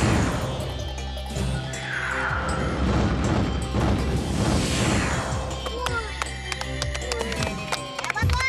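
Comedy sound effects over music: a string of swooshing sweeps that fall in pitch as the football flies, with crash hits, then a rapid run of clicks and short bleeps in the last couple of seconds.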